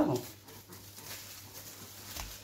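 Plastic cling film rustling and crinkling faintly as hands wrap it around a pork tenderloin.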